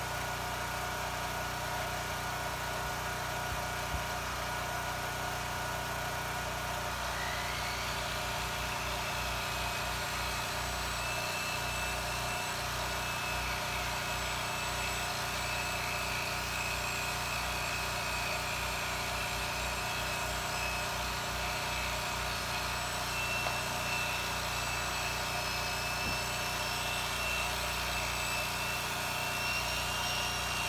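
A portable generator's engine runs steadily throughout. About eight seconds in, the whine of a six-inch Porter-Cable polisher winds up and keeps going as it buffs wax onto the car's paint.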